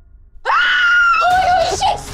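A woman screaming loudly, starting suddenly about half a second in; the long high scream drops lower in pitch partway through and breaks up near the end.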